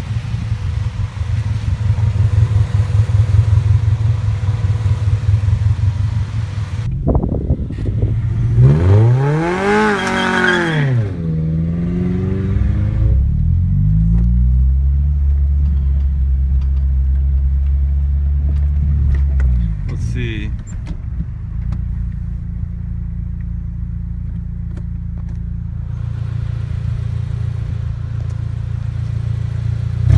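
Car engine idling, then revved up and back down between about seven and eleven seconds in, followed by a steady low drone of driving heard from inside a car, with a short rev about twenty seconds in.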